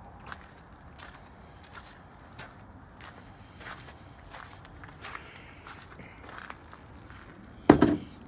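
Footsteps on gravel, roughly one step every half second, then a single loud thump just before the end.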